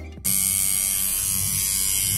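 Electric tattoo machine buzzing steadily, starting suddenly about a quarter second in.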